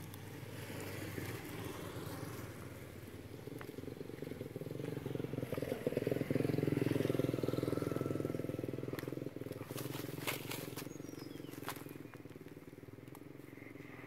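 A motor vehicle engine passing by: a steady hum that swells to its loudest about halfway through and then fades. Several sharp clicks come near the end.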